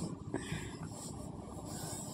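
Raw prawns tipped from a steel bowl into thick cooked masala in a steel kadhai: a faint steady sizzle with one soft knock about a third of a second in.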